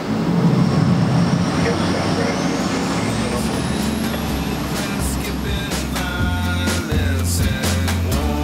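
Low rumble of a motorboat under way, heard from the helm. Background music builds over it, starting with a rising tone about two seconds in and adding a bass line and beat from about halfway.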